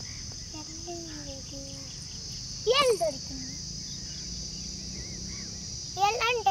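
Steady high-pitched chirring of insects, with faint voices early on. A person's short loud call rises and falls in pitch about three seconds in.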